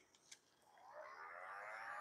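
Heat gun switched on about half a second in, its fan motor spinning up in a faint rising whine with a rush of air.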